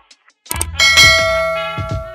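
Stock subscribe-button sound effect: after a short silence, a couple of clicks about half a second in, then a bright bell ding that rings and fades over about a second, with a music beat underneath.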